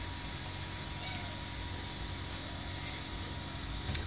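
Steady hum with a high, thin whine from a Prusa i3 3D printer idling with its extruder cooling fans running, with a short click just before the end.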